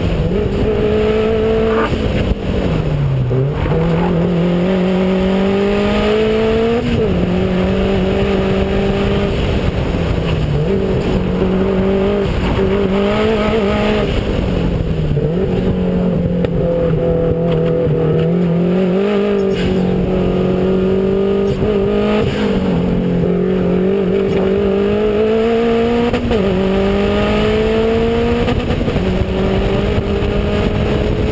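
Subaru WRX's turbocharged flat-four engine driven hard on a race track, heard from a camera mounted on the outside of the car. The revs climb over several seconds and drop back again and again, about eight times.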